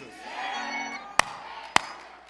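Congregation responding with scattered shouts and murmurs during a pause in the preaching, over soft held music. Two sharp strikes land about half a second apart in the second half.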